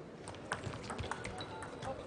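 Table tennis rally: a celluloid ball clicking off rubber paddles and bouncing on the table, a quick run of about eight sharp ticks.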